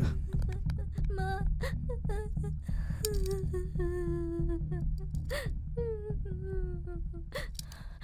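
Sad background score: a wordless voice humming a slow melody in long held, wavering notes over a low drone, with short crying gasps between phrases.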